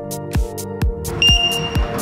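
Electronic dance music with a steady kick drum at about two beats a second and sustained synth tones. A little after a second in, a single high electronic beep sounds for about half a second over the music.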